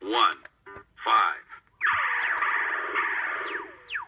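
VTech Buzz Lightyear toy phone's electronic voice saying two short words as its number keys are pressed, then about two seconds of electronic sound effect with falling swoops, all through the toy's small speaker.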